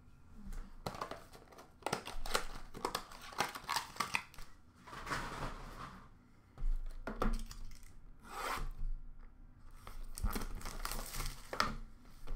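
Hands handling trading-card packaging: plastic wrappers crinkling and rustling in repeated bursts, with tearing and a few light knocks.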